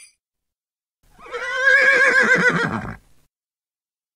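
A horse whinnying once: a single quavering call about two seconds long, starting about a second in.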